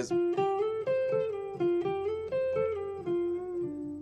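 Electric guitar playing a blues lick: a quick run of about a dozen single picked notes that ends on one lower note held near the end.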